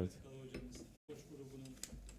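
Faint, light clicks and clinks with quiet voices in the background. The sound drops out completely for a moment about halfway through.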